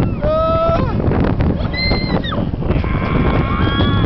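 Riders screaming on a looping amusement ride: three held, high-pitched shrieks as it goes over the top, over a steady rumble of wind on the microphone.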